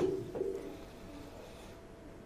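A man's voice trails off briefly, then quiet room tone with a faint steady hum.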